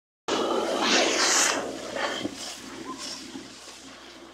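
Water and air gushing out of a newly drilled borehole beside the drilling rig: a loud rushing hiss that cuts in suddenly, is strongest for about the first second and a half, then fades away.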